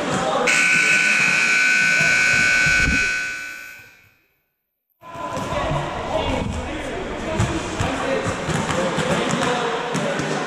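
Gym scoreboard buzzer sounding one long steady blast as the clock runs out, then fading away into a second of silence. Gym chatter and basketball bounces follow.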